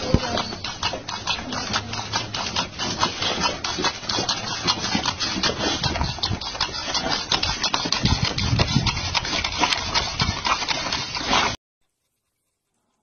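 A boxer dog jumping and scrabbling on paving tiles as it snaps at a jet of water from a garden hose. A quick, irregular clatter of claws and paws sounds over a steady hiss of spray, then cuts off suddenly near the end.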